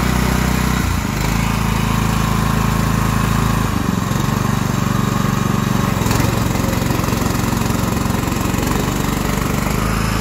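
Honda GX390 single-cylinder petrol engine running steadily, driving the hydraulics of a Krpan CV18 Mobile log splitter. Its note shifts about a second in and again near four seconds as the splitter's controls are worked.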